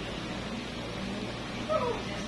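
A single short, high whimpering cry that falls in pitch near the end, over a steady low room hum.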